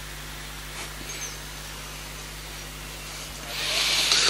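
Steady low electrical hum and faint hiss from a microphone and PA system in a pause of the recitation, with a rush of hiss swelling up near the end.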